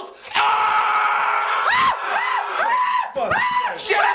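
A man screaming as if burned by splashed holy water: one long scream, then a run of short rising-and-falling cries about twice a second.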